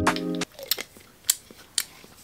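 Background guitar music cuts off about half a second in, then a few short sharp clicks and gulps as a person swallows a ginger shot from a small bottle.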